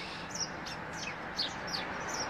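Small birds chirping: a string of short, high chirps, each dropping quickly in pitch, over faint outdoor background noise.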